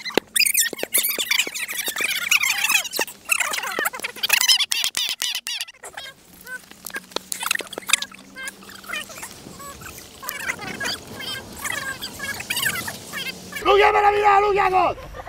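Children's high-pitched shouts and laughter, with scattered sharp knocks among them.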